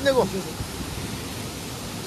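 Steady rushing of a nearby waterfall: an even hiss of falling water, with a man's words trailing off at the very start.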